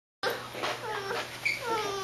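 A toddler's whimpering, fussing vocal sounds: several short, high, whiny cries that fall in pitch, starting a moment in.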